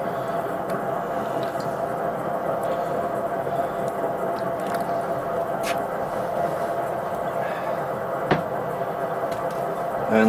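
Brewed coffee draining steadily from a valved drip-through brewer into a ceramic mug, with a single sharp click about eight seconds in.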